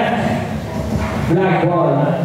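A man talking into a microphone over a PA system in a large hall, his voice coming in about a second and a half in.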